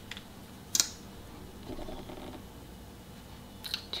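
Small plastic clicks of a makeup container being handled as a concealer is opened: one sharp click about a second in, then a few lighter clicks near the end, in a quiet room.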